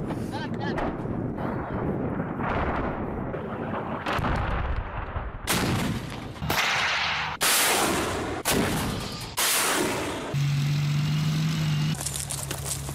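Artillery firing: a run of about five loud, sudden booms roughly a second apart, after a stretch of rougher, quieter rumbling.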